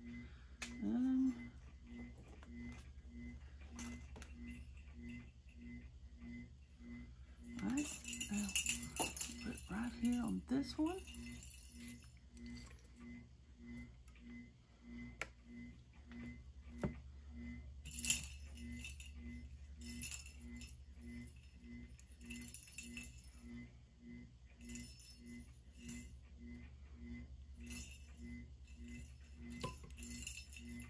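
A small motor hums steadily with a soft pulse about twice a second, with short bursts of rattling and clinking now and then.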